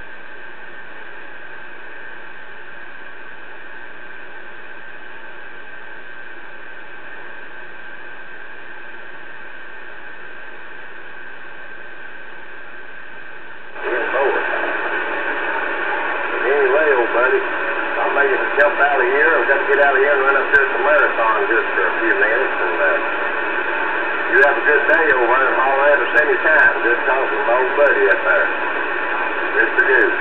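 Connex CX-3400HP CB radio receiver with steady static hiss for about fourteen seconds, then a transmission comes in abruptly and louder, a man's voice talking over the hiss through the radio's speaker.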